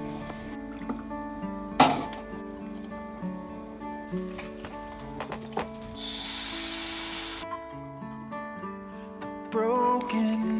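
Soft acoustic guitar background music with sustained notes, a single sharp click about two seconds in, and a second-and-a-half burst of hissing sizzle about six seconds in as batter is poured into a hot wok.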